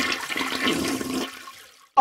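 A toilet flushing, used as an edited-in comic sound effect: a rush of water that tapers away about a second and a half in.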